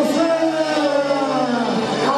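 Live dance-band music: a long held note that glides slowly down in pitch and ends near the close.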